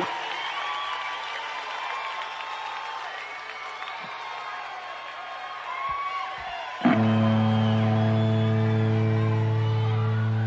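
Concert crowd cheering and whistling between songs, with a short laugh at the start. About seven seconds in, a loud sustained electric-guitar chord suddenly comes in and rings on steadily, opening the next song.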